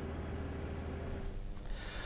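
Faint street ambience: a low, steady traffic rumble that fades away shortly before the end.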